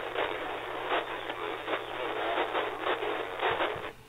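Narrowband FM audio from a 162.4 MHz weather radio broadcast, demodulated by an RTL-SDR dongle in SDR#, heard as a harsh, crackling, telephone-narrow hiss. It sounds distorted because the receiver is slightly off frequency, as an uncalibrated dongle without a TCXO needs a ppm correction. The sound cuts off just before the end.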